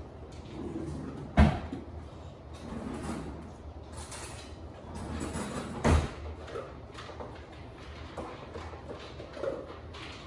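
A dog at a raised feeding bowl stand knocks the bowl in its stand twice, sharply, about one and a half and six seconds in, with softer clatter between the knocks.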